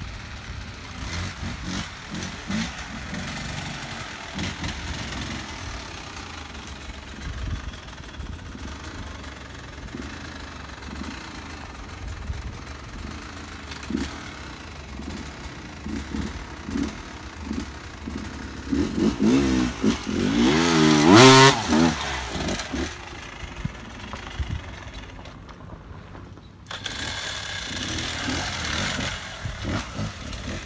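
Off-road dirt bike engine revving in short bursts of throttle, with one long, loud rev that rises and falls in pitch about two-thirds of the way in. Near the end the sound changes abruptly to a steadier engine sound.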